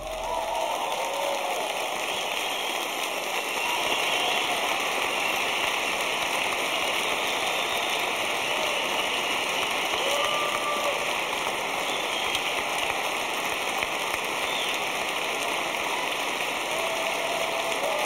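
A large concert-hall audience applauding steadily, with a few scattered cheers.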